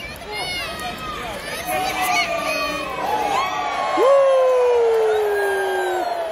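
Arena wrestling crowd shouting and cheering, many voices overlapping. One loud, long yell starts about four seconds in and slides slowly down in pitch.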